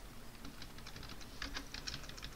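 Computer keyboard being typed on: an irregular run of key clicks, coming faster near the end.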